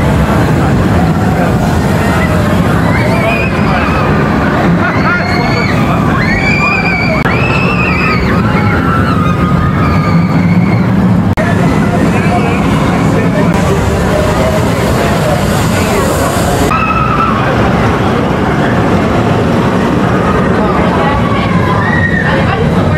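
A steel roller coaster train runs along its track with a steady low rumble, its riders screaming and yelling as it goes by; the screams come thickest in the first half.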